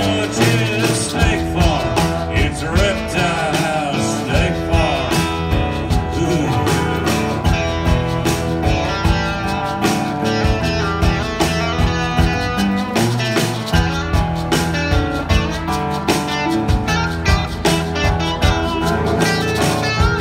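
Live blues-rock band playing, with acoustic and electric guitars over drums keeping a steady beat.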